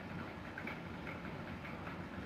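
Faint room noise, a low steady hum with a few faint light ticks.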